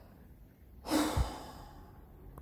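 A woman's audible sigh close to the microphone, starting a little under a second in and fading out over about half a second, with a short low thump partway through it.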